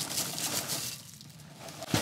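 Cinnamon French Toast Frosted Flakes pouring from the box into a bowl: a dry patter of flakes landing that thins out about a second in.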